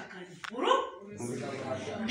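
A woman's voice over a microphone and loudspeaker: a short, sharply rising exclamation about half a second in, then quieter voicing.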